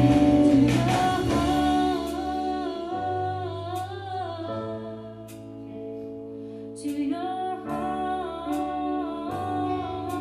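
Church praise band playing a worship song: a singer holds long, wavering notes over sustained guitar chords. It is loudest in the first two seconds, then plays on more softly.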